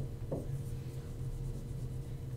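Whiteboard marker writing: a few short, faint strokes near the start, over a steady low room hum.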